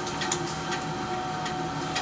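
A steady machine-like hum over an even hiss, with two held low tones and a few faint ticks.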